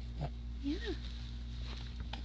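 A baby's short coo, rising then falling in pitch, over a steady low hum.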